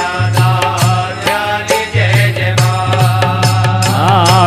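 Instrumental interlude of a Hindu devotional song to the Mother Goddess (a bhent): a sustained melody line over steady bass notes, with regular percussion beats about two or three a second.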